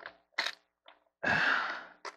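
A short sharp click, then a long breathy exhale from a man bent over.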